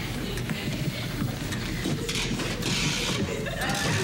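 Fishing reel clicking and ratcheting as line is worked and let out from a rod.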